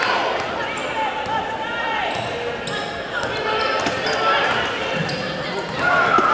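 A basketball being dribbled on a hardwood gym floor, with sneakers squeaking in short, sliding chirps as players move on the court, in a large echoing gym.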